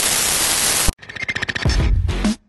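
A loud burst of static-like hiss that cuts off suddenly about a second in, then an electronic outro jingle starts with fast pulsing beats.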